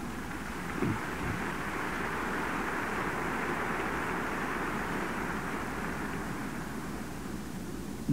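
Steady hiss and low hum of an old cassette recording during a pause in a talk, with a soft thump about a second in.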